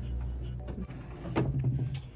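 A dresser drawer pulled open on its runners, with a sharp knock about a second and a half in, over steady background music.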